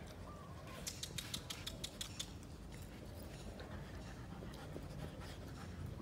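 Rottweiler puppies moving about close to the microphone, faint, with a quick run of soft clicks and scuffles for about a second and a half near the start, then quieter.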